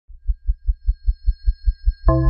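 Intro sting sound effect: a low, heartbeat-like thump repeating evenly about five times a second, over faint steady high tones.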